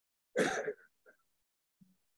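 A person's brief vocal burst, about half a second long, followed by a couple of faint small sounds.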